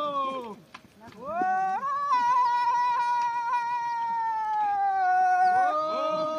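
An animal's long wailing calls: one fades out at the start; after a short break another rises, holds for about four seconds while slowly sinking in pitch, and a third rises near the end.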